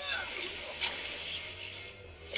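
Soundtrack of an animated fantasy episode playing quietly under the reaction: a steady low rumble with two short noisy hits in the first second.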